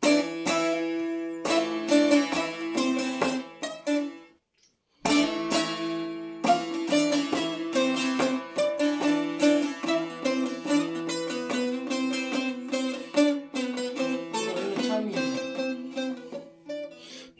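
Bağlama (Turkish long-necked saz) played with quick plucked notes over a steadily sounding drone string. The playing stops for under a second about four seconds in, then starts again.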